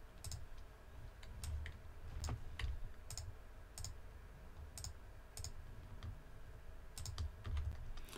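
Faint computer keyboard and mouse clicks, about fifteen at irregular intervals, with soft low thumps underneath.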